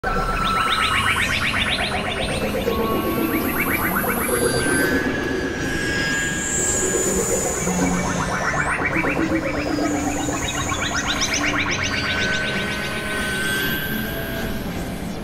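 Experimental electronic synthesizer noise music: a dense, layered texture of fast stuttering pulses coming in spells, high gliding whistles that rise and fall, over steady low drones.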